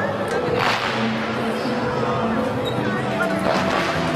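Two sharp swishes of straight swords cutting through the air, one about a second in and one near the end, over the steady chatter of a crowd and background music.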